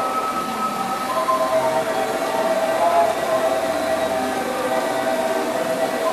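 Miniature Polyp (octopus) fairground ride model running, its small electric drive and gearing whirring with a steady, slightly wavering whine.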